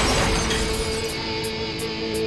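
Loud heavy-metal style music: a held distorted electric-guitar sound with bright cymbal strokes repeating about three times a second.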